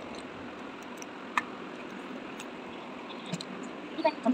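Faint clicks and taps of plastic and metal construction-kit parts being handled as a wheel is fitted onto a toy car's axle, over a steady background hiss. One sharper click with a short ring comes about a second and a half in.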